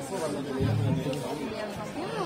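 Several people talking at once in the background, a low murmur of chatter quieter than the nearby voices.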